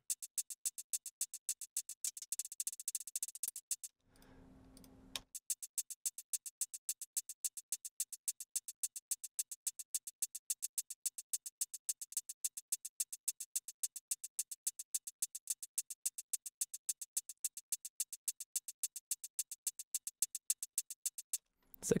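Short, bright electronic percussion ticks at a steady pace of about four a second, played back summed to mono through a very short delay of roughly 6 to 12 ms that doubles each hit. The delay time is being adjusted while it plays. Playback drops out for about a second, leaving only a faint hum.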